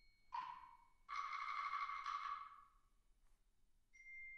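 Sparse solo percussion: a short struck note that rings briefly about a third of a second in, then a longer hissing, ringing sound lasting about a second and a half that fades away, and near the end a high, pure ringing note begins.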